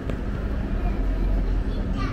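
City street ambience: a steady low rumble of traffic with people talking in the background.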